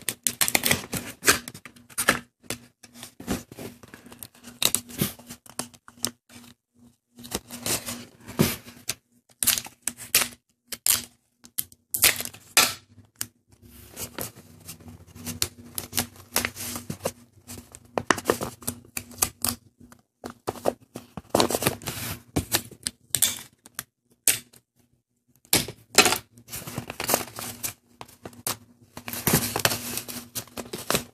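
Sheet of printer paper being folded, pressed and shaped by hand: irregular bursts of rustling, crinkling and crisp clicks, with short pauses between handfuls of work.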